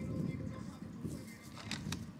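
Clear plastic candy bag crinkling as it is twisted closed by hand, with a couple of short sharp crackles near the end over a low outdoor rumble.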